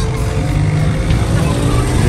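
Motorcycle engine running close by as it rides slowly past, a steady low engine note.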